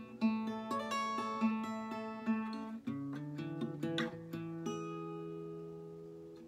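Acoustic guitar with a capo, fingerpicked: a run of single plucked notes for about three seconds, then a new chord, and near the end a chord left ringing and slowly fading.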